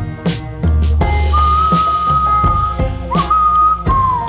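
Instrumental break of a band-backed song: a whistled melody holds a high note from about a second in, with a quick dip near the end, over a steady drum beat and bass.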